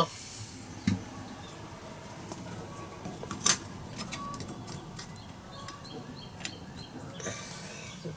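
Light handling clicks and taps from a bilge-alarm switch faceplate being held and fitted against a boat's helm console, over a faint steady background, with one sharp click about three and a half seconds in.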